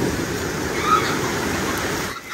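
Steady rush of surf washing onto the beach, mixed with wind buffeting the microphone.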